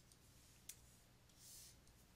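Near silence with faint pen-on-tablet sounds: a single light click about two-thirds of a second in, then a brief soft scratch of a stylus writing a little after halfway.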